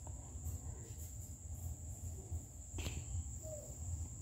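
Steady background noise: a constant high-pitched tone over a low hum, with one sharp click a little before three seconds in.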